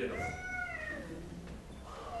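A man's voice holding a drawn-out vowel for about a second, its pitch sagging as it trails off, then a quieter pause with low room hum.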